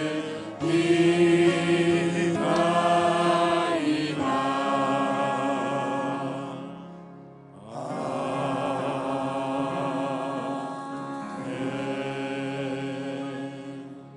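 Slow singing in two long phrases of held, wavering notes, with a short break about seven seconds in.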